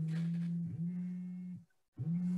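A woman's voice holding a long, steady, closed-mouth "mmm" hum while thinking what to say, with a short break partway through; it stops just before the end.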